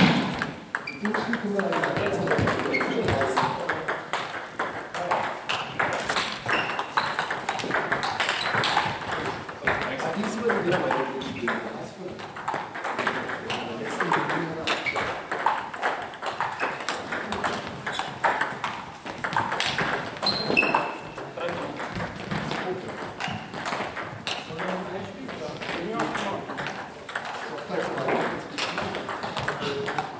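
Table tennis balls clicking off rackets and the table in quick, irregular rallies. Clicks from more than one table overlap.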